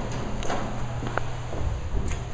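Footsteps and a few knocks from handling, over a steady low hum.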